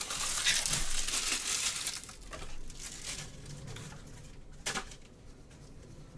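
Crinkling of a trading-card pack's foil wrapper being handled and crumpled, loudest in the first two seconds, with a single sharp click near the end.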